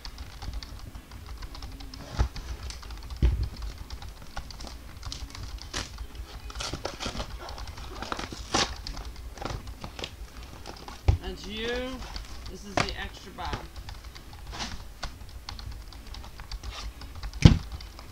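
Gloved hands opening and handling a cardboard 2014 Select Football trading-card box and its packs: irregular clicks, taps and rustles of cardboard and wrapper, with a few sharper thumps, the loudest near the end.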